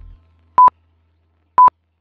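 Timer countdown beeps: two short, identical high beeps a second apart. Background music fades out just before the first.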